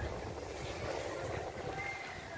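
Steady outdoor background noise: a low rumble of wind on the microphone, with a faint brief high tone near the end.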